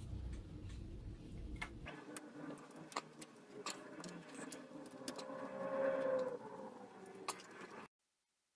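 Faint scattered clicks and ticks of a screwdriver and plastic parts being handled as a screw is driven into the 3D printer's hot-end cooling shroud. Around five seconds in, a faint sustained tone lasts about a second and drops slightly in pitch as it ends.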